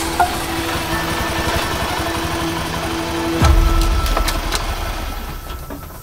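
Small step-through motorbike engine running as it rides by, swelling louder about three and a half seconds in and then fading away.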